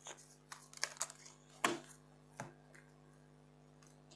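Tarot cards being handled and drawn from the deck against a tabletop: a handful of soft clicks and slaps in the first two and a half seconds, the loudest near the middle, over a faint steady hum.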